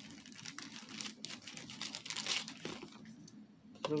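Small clear plastic bag crinkling and rustling as it is handled and opened, with light clicks for the first two or three seconds, then quieter.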